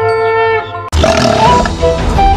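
A conch shell (shankh) blast held on one steady note, dying away about half a second in. Loud instrumental music with a stepping melody starts abruptly just under a second in.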